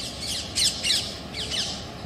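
Birds calling: a quick run of short, high-pitched chirps and squawks, each sliding downward, in two clusters.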